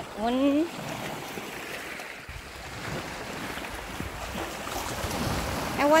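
Small sea waves washing and swirling over flat shoreline rocks, a steady wash without a distinct crash. From about two seconds in, wind rumbles on the microphone underneath it.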